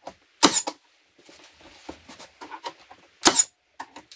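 Cordless nailer firing into the closet's wood framing: two loud, sharp shots, about half a second in and about three seconds in, with quieter knocks and handling noise between.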